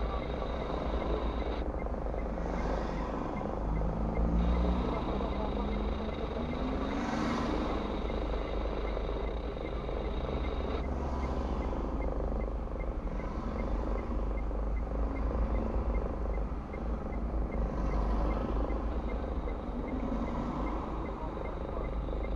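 Car engine idling, heard from inside the cabin while stopped in traffic, with other cars driving across in front and their engine pitch rising as they pull through. A faint, evenly spaced ticking runs underneath.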